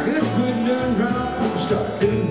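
A live band playing on stage, with amplified electric guitars over a drum kit.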